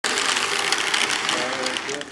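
Model railway locomotive and its tank wagons passing close by, wheels clicking and rattling rapidly over the track with a mechanical whir from the drive; the sound drops off near the end as the locomotive goes past.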